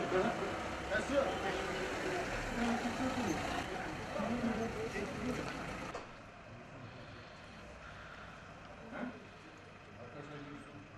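Busy street sound: several people talking over a vehicle engine running. About six seconds in it drops to a quieter street background, with one short knock about three seconds later.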